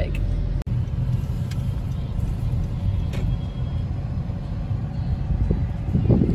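Steady low rumble of a car's engine and tyres heard from inside the cabin while driving, with a brief break about half a second in.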